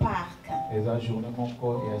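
Voices praying aloud over sustained keyboard music, with a falling cry right at the start.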